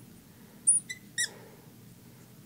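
Marker tip squeaking on the glass of a lightboard as it draws short strokes: a few brief high squeaks about a second in.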